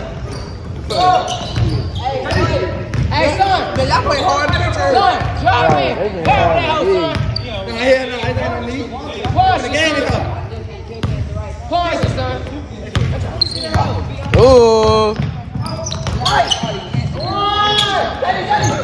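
Basketball bouncing on a hardwood gym floor during a pickup game, with many short impacts amid players' shouting and calls, in a large reverberant gym.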